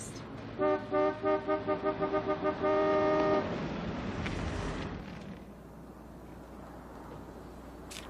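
Car horn honked impatiently: a quick rhythmic run of about ten short toots, then one longer held blast.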